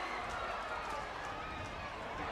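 Faint distant voices of players and spectators at an outdoor rugby ground, shouting and calling over a steady low background hum.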